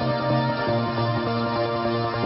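Background music with held chords that change every half second or so.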